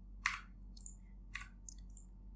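Computer mouse clicking: two sharp clicks about a second apart with a few fainter ticks between, over a low steady hum.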